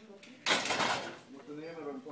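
A sudden metallic clatter about half a second in, lasting about half a second, followed by voices.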